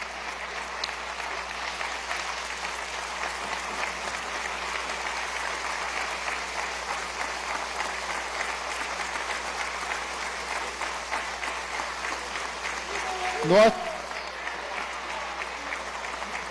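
Applause from a chamber full of legislators, many people clapping at once in a steady, dense patter that holds for the whole stretch.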